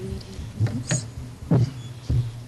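Microphone handling noise: a few dull bumps and knocks at irregular moments.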